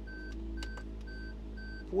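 A car's electronic warning chime giving short, even beeps about twice a second, four in a row.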